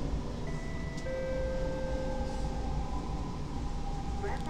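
Metro train running, heard inside the carriage as a steady rumble. About half a second in, a chime of several held tones sounds and fades out around three seconds.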